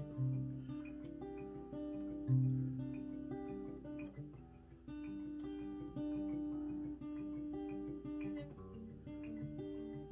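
Cutaway acoustic guitar played alone in a slow chord progression, the instrumental intro before the vocals come in. Two loud low bass notes ring out, one at the start and one about two seconds in.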